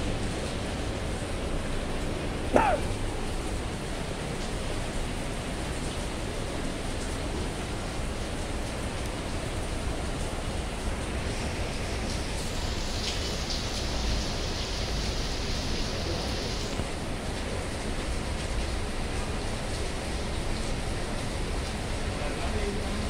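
Steady hiss of heavy rain falling. A short, sharp rising squeak cuts through about two and a half seconds in, and a higher hiss swells for several seconds past the middle.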